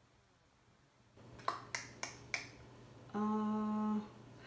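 Four quick, sharp clicks from the paint cups and stir sticks being handled, about a second and a half in, followed near the end by a steady held hum in a woman's voice, the loudest sound here.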